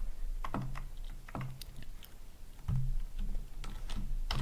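Typing on a computer keyboard: a handful of irregularly spaced keystrokes with short pauses between them.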